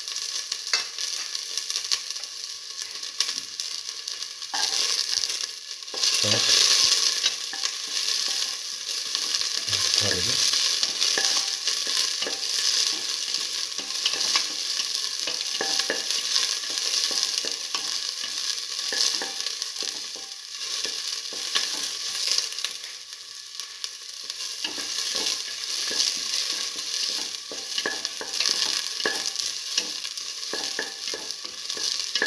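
Sliced shallots sizzling in hot oil in a stainless steel pan as they are stirred and sautéed, with a louder stretch of sizzling about five seconds in.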